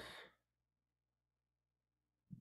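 Near silence on a video-call line, with only the tail of a spoken word fading out at the very start.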